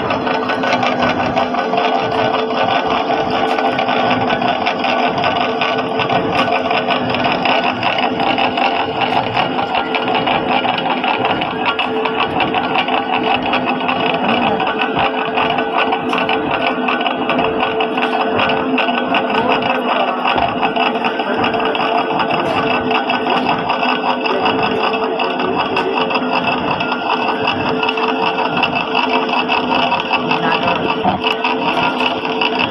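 Small metal lathe running and cutting a steel bar: a loud, steady machine sound with a constant hum and dense grinding chatter, unchanging throughout.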